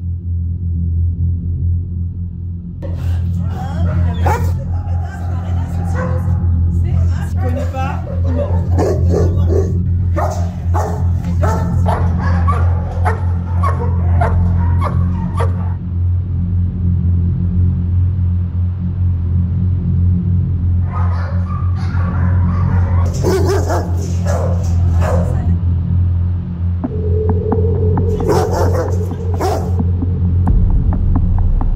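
A dog barking in repeated bouts over a low, steady droning music bed.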